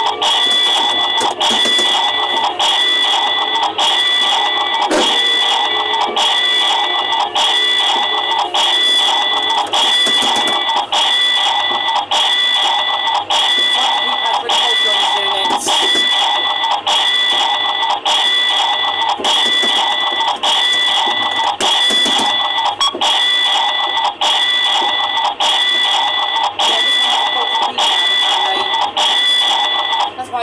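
RG Mitchell Hank's Ice Cream Van kiddie ride playing its ride music loud through its own speaker: a rhythmic loop of about two beats a second with a steady high-pitched tone held over it.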